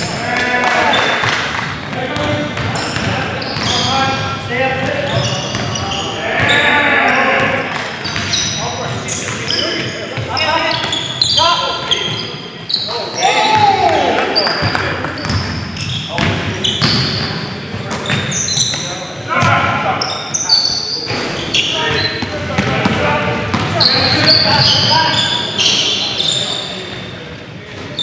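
Pickup-style basketball game in a gym: a ball being dribbled on a hardwood floor, with players shouting and calling to one another in the echoing hall.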